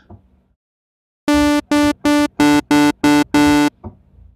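Reason's Thor software synthesizer, in phase modulation oscillator mode, playing seven short staccato notes on the same pitch, about three a second. The tone is bright and buzzy, full of overtones: a phase-modulation patch made to imitate Casio CZ phase distortion.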